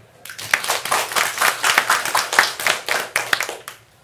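Audience clapping, starting a moment in and dying away shortly before the end.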